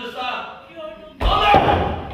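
A sudden loud slam about a second in, a wooden bench banged down on the stage floor; it is the loudest sound here and lasts about half a second.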